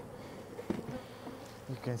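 Honey bees buzzing in a crowd around a hive entrance, a steady hum of many bees milling in confusion. A few faint knocks from the hive equipment sound partway through.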